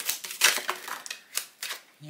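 Fortune-telling cards being handled and laid down on a table: a run of sharp card snaps and taps, several in quick succession.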